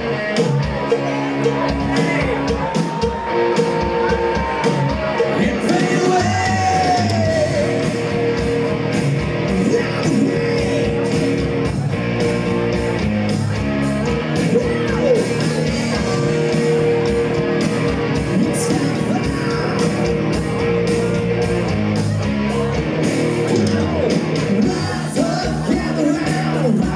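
Rock band playing live on electric guitars and drums with a singer's voice gliding over held chords, heard loud and steady in a large room.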